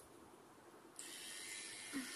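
Faint room tone that steps up suddenly about a second in to a steady, even hiss, with a soft knock near the end.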